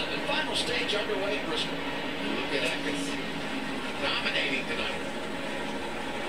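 Television race-broadcast audio playing quietly in the room: a commentator talking, with the race trucks' engines running beneath as the field restarts.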